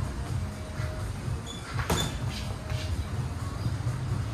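Background music over a low rumble, with one sharp smack about two seconds in: a boxing glove landing during light sparring.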